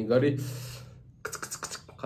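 A man's word trailing off, then about a second in, short breathy bursts of laughter with his mouth right on the microphone, coming as quick clicky pulses about six a second.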